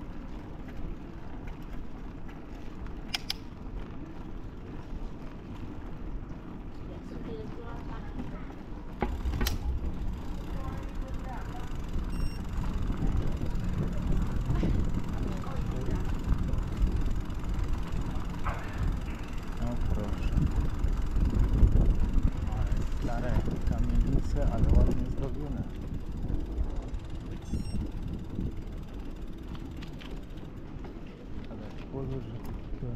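Bicycle rolling over cobblestone paving: a low rumble from the tyres and frame that grows heavier from about nine seconds in, with a couple of sharp clicks.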